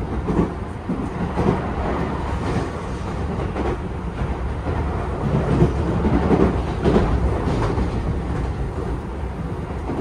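Running sound inside a Tobu 10080/10050-type commuter train under way: a steady low rumble of wheels on rail with irregular clacks as the wheels pass over rail joints.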